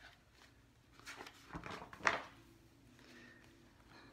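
A hardback picture book being handled as its page is turned: a few soft paper rustles and knocks, with one sharp tap about two seconds in.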